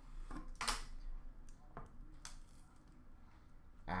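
Hands opening a sealed cardboard trading-card box: a few short, fairly quiet scrapes and clicks of cardboard being handled, the loudest about half a second in.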